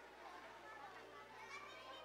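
Faint murmur of many people chattering at once, no single voice standing out, over a steady low hum.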